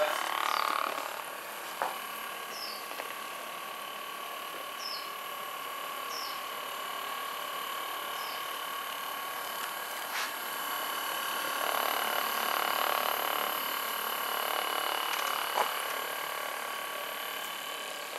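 Hypervolt percussion massager running steadily on its second speed with the flat head, pressed along the thigh muscle. Its motor gives a continuous hum with a few faint clicks, and the sound grows a little fuller for a few seconds past the middle.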